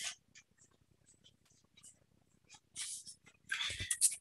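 A domestic cat 'talking', faint and off-mic: a few short, breathy calls, with a low thump near the end.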